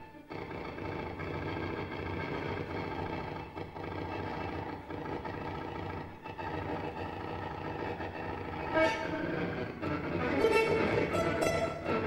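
Free-improvised ensemble music with cello: a dense, dissonant drone of many held tones, which thickens and grows louder from about nine seconds in.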